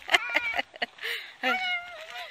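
A woman laughing: a few short giggles, a breathy pause, then a higher drawn-out laugh near the end.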